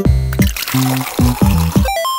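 Cartoon sound effect of juice pouring and filling a glass, over children's background music with short bouncy low notes.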